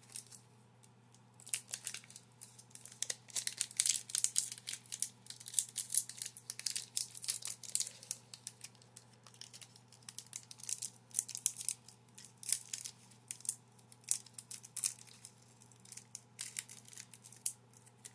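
Crinkling and tearing at a foil Magic: The Gathering booster pack wrapper, a long irregular run of sharp crackles as the tough pack resists being torn open by hand.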